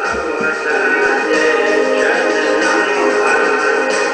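A recorded song in a Native American style, with chanted vocals in wordless syllables over musical backing.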